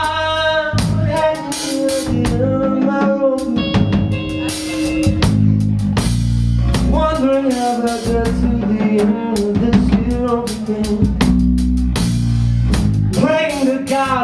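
A live rock band plays full out: a Gretsch drum kit with frequent hits over bass and guitar chords, and a melodic lead line that bends and wavers in pitch above them.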